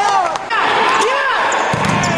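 Players' shoes squeaking on an indoor futsal court floor, many short squeaks rising and falling in pitch, mixed with a few sharp knocks of the ball being kicked.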